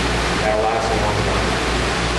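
Steady rushing of water circulating through a home aquaponics system, with a constant low hum underneath and a brief voice fragment about half a second in.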